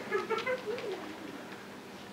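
Faint, brief human vocal sounds in the first second, then only the quiet hum of a hall.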